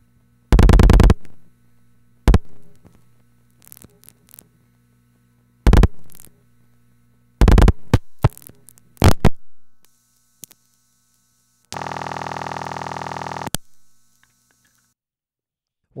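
Telephone line audio on a No. 1 Crossbar switch while the rest of the number is dialed: several loud groups of clicks from the dialing and the originating sender's relays, over a low line hum. About twelve seconds in, a buzzing tone sounds for about two seconds.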